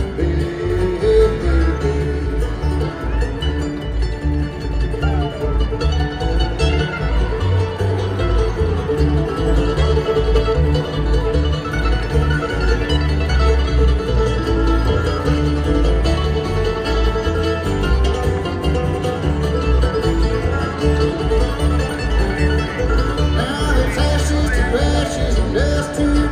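Live bluegrass band playing an instrumental passage on acoustic guitars, banjo, mandolin and upright bass, over a steady bass beat.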